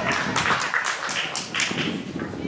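Scattered hand claps from spectators at a football match, several sharp claps a second.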